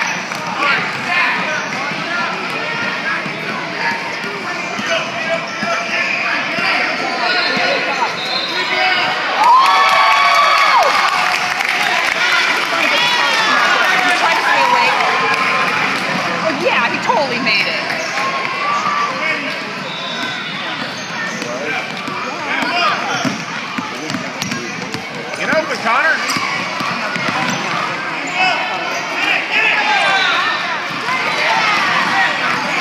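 A basketball dribbling on a hardwood gym floor during a youth game, with running feet and shouting voices in a large, echoing hall.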